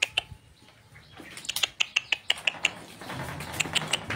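Small birds chirping in quick runs of short, high chirps, several a second, after about a second of near quiet. A low steady hum comes in near the end.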